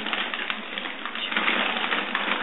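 Wrapping paper crinkling and rustling as a toddler pulls and tears at it: a dense, continuous crackle.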